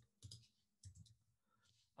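Near silence broken by a few faint clicks of a computer keyboard in the first half as a line of code is typed.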